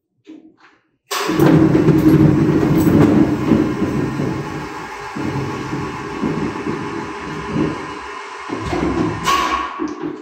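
A battleship's 16-inch shell hoist running as it raises a shell. A small click comes first, then the machinery starts abruptly with a loud, steady mechanical rumble that eases a little and cuts off near the end.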